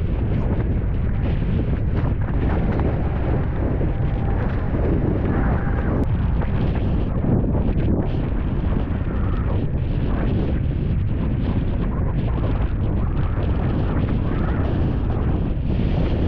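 Heavy wind buffeting a small camera microphone: a loud, steady low rumble that keeps up without a break.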